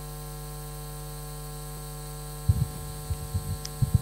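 Steady electrical mains hum in the sound system, with a few short low bumps from about two and a half seconds in.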